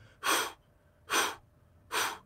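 Three short, forceful breaths blown out, about a second apart: freediving 'candle blows', the pre-dive signal that tells everyone nearby the diver is about to go down and also clears out the lungs.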